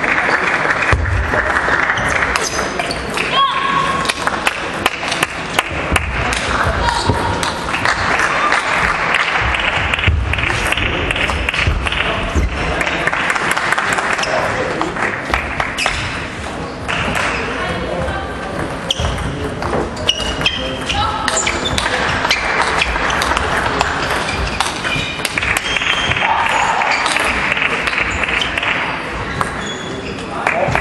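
Table tennis ball clicking against paddles and the table in repeated quick exchanges, over a steady hubbub of many voices.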